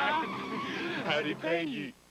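Two men shouting and cheering with joy, wordless yells rather than speech.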